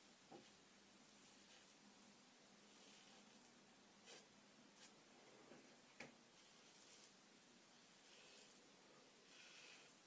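Faint scraping of a Mühle R106 safety razor cutting stubble on the neck, a handful of short strokes spread through an otherwise near-silent room.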